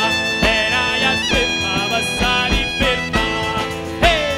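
Southern Italian folk music, an instrumental passage: a tammorra frame drum with jingles keeps a steady beat under a held melody line with vibrato.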